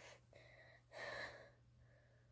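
Faint breathing of a person close to the microphone: a light breath, then a stronger gasp-like breath about a second in.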